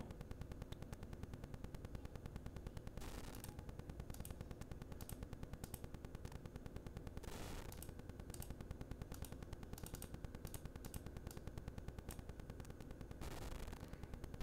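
Faint low room noise with many light clicks and a few soft swells of hiss, but no sound from the video being played back: its audio is not coming through.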